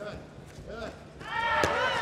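A taekwondo back-leg kick smacks once against a blocking arm or padding about a second and a half in. It comes amid a loud shout that starts just before it.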